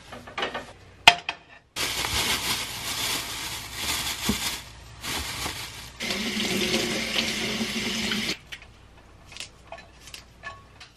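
Kitchen tap running into a stainless steel sink as a head of broccoli is rinsed under the stream, for about six seconds, changing tone partway through and stopping suddenly. Before it, a plastic bag rustles and there is one sharp click about a second in.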